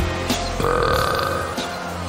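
A long, comic burp sound effect from a giant cartoon monster head, about a second long, over background music.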